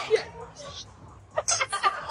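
A man's exclamation cuts off, then near the end comes a quick run of short, breathy snickering laughs.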